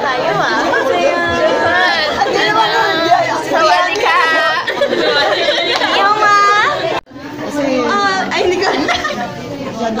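Several young women's voices chattering and calling out over each other. About seven seconds in, the sound cuts out suddenly for a moment, then the talk resumes.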